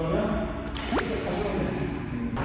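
A single quick whoosh about a second in, rising sharply in pitch.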